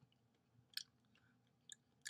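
Near silence, with a few faint mouth clicks: lips and tongue smacking while tasting a tart beer.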